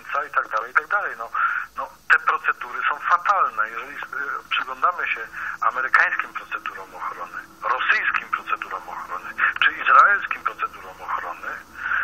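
Speech only: continuous talk with a thin, tinny sound.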